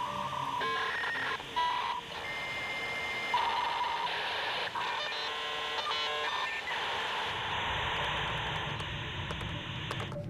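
Dial-up modem connecting over a phone line: a quick run of changing beeps and warbling tones, a steady higher tone held for about a second, then from about seven seconds in the even hissing rush of the data handshake.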